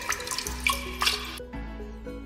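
Kitchen tap running into a sink while dishes are washed, with a few light clinks of cups and dishes; the water noise breaks off abruptly about one and a half seconds in.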